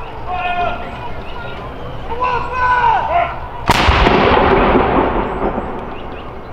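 A single report from a 105 mm L118 light gun firing a blank saluting round, about two-thirds of the way in, its rumble dying away over about two seconds.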